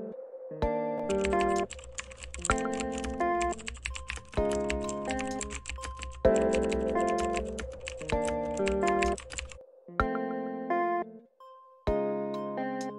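Computer keyboard typing: a fast, dense run of key clicks starting about a second in and stopping near the end, over background music of piano-like chords.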